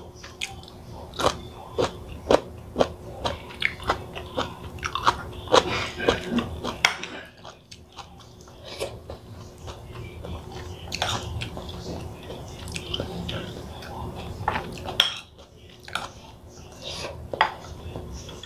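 A person chewing a mouthful of rice and broccoli close to the microphone, with many small sharp clicks and crunches, busiest in the first several seconds and sparser after. A metal spoon now and then clinks and scrapes on a ceramic plate.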